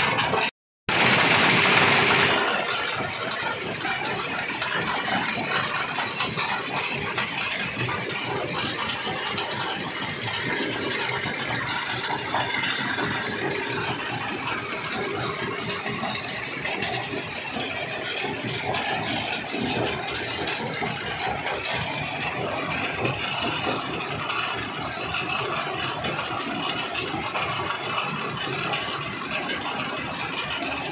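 Mobile rock crusher running: a steady engine drone under a continuous rattle of stone going through the machine. A sudden dropout just after the start gives way to a louder couple of seconds, then the sound settles to an even level.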